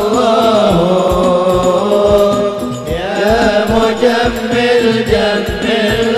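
Men singing sholawat, a devotional chant in praise of the Prophet, in a wavering melismatic melody over microphone, with hadroh hand drums keeping a steady beat beneath. A new sung phrase begins about halfway through.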